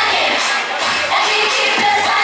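Upbeat J-pop song performed live through a PA: a backing track with the group's female voices singing into handheld microphones, and some crowd noise from the audience.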